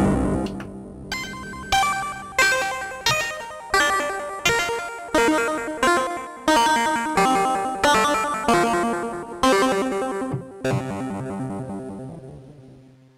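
Arturia MiniFreak synthesizer playing its 'H4RP-C-KORD' patch, an eight-bit, harpsichord-like plucked sound with square-wave modulation and added ambience. A ringing wash fades over the first second, then a run of about fourteen single plucked notes follows, roughly one every 0.7 s. Each note decays and the pitch steps around from note to note, and the last one fades out at the end.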